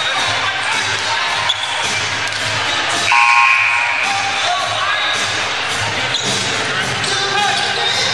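Crowd chatter in a basketball gym, with a basketball bouncing on the hardwood. About three seconds in a short buzzer sounds, marking the end of the timeout.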